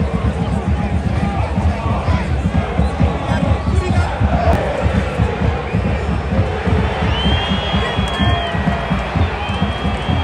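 Football stadium crowd chanting and singing, over a dense, steady low rumble. A high whistle is held for about a second and a half about seven seconds in.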